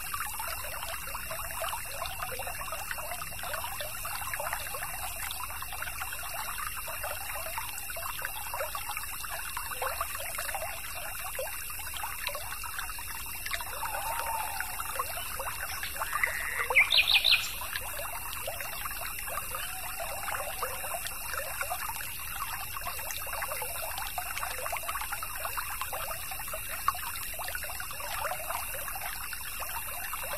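Small stream trickling and babbling steadily. A little past the middle, a short rising bird call stands out as the loudest sound.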